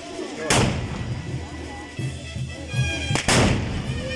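Muskets fired with black-powder blank charges: one loud shot about half a second in, then two more in quick succession a little after three seconds, each with a short ringing tail.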